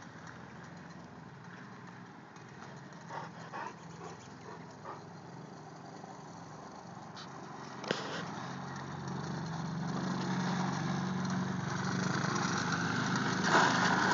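Small youth ATV engine running steadily, faint at first and growing louder from about halfway as the quad comes closer.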